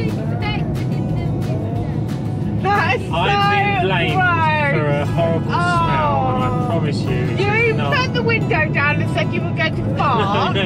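People laughing and talking inside a moving campervan's cabin, over steady engine and road noise.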